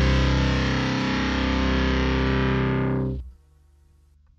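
A rock song ends on a held, distorted electric guitar chord that rings steadily. About three seconds in, the high end fades first and then the whole chord drops away, leaving only a faint low hum.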